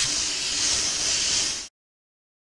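A steady hiss that starts abruptly and cuts off sharply about a second and a half in.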